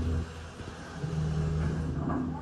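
Low, steady machinery hum of a Schindler 300A glass elevator. The hum dips just after the start and a steady tone returns about a second in.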